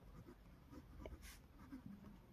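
Faint scratching of a pen writing on a notebook page, in a few short strokes.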